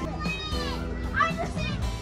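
Children's voices calling and squealing at a busy playground, with background music running underneath.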